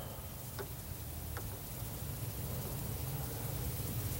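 Faint steady hiss of room tone during a pause in speech, with two faint ticks about half a second and a second and a half in.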